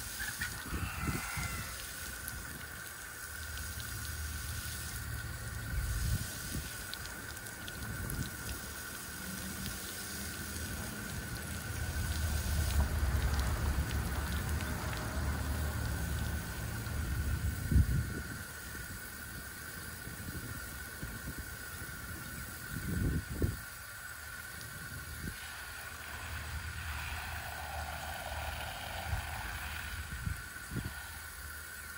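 Outdoor pole shower spraying steadily onto a person standing under it, a constant hiss, over a low rumble that swells and fades, loudest around the middle.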